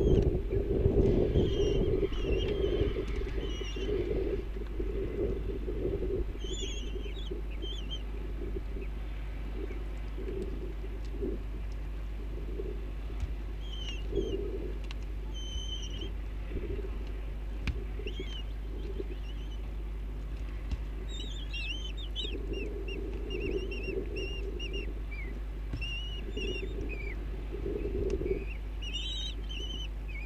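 Kestrels calling inside a nest box: short, high, wavering notes come again and again, with a quick run of falling notes about two-thirds of the way in. Low rumbling patches, loudest at the start, and a steady low hum lie beneath.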